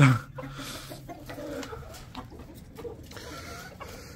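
Chickens clucking quietly, a few short clucks scattered through a low background.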